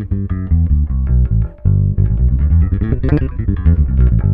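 Four-string electric bass guitar playing a fast run of single notes with extended fingering, the pitch changing several times a second.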